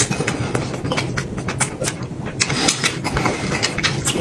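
Close-up eating sounds of a man slurping and chewing noodles, with many irregular short clicks and smacks over a low steady hum.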